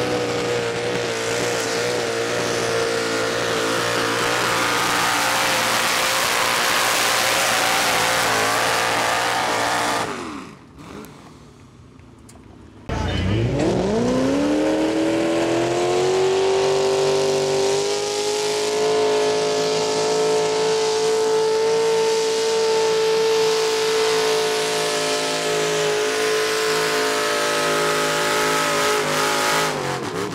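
Naturally aspirated mini rod pulling tractor's engine at full throttle under the load of the sled, a steady high note that wavers slightly, falling away about ten seconds in. About three seconds later another mini rod's engine comes in, its pitch rising fast as it revs up, then holding a steady high note under full load.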